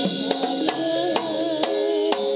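Live Javanese gamelan music: sharp hand-drum (kendang) strokes about every half second over sustained ringing metallophone tones, with a wavering melodic line in the middle.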